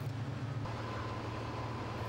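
Steady low hum of heavy construction machinery. About half a second in, the hum changes to a slightly different one, with a faint steady high whine added.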